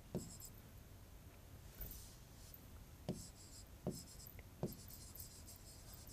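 Faint scratching of a marker writing across a board, with a few soft taps as the strokes touch down.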